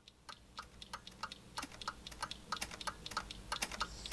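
Keys being typed: a quick, fairly even run of sharp clicks, about five a second, growing louder.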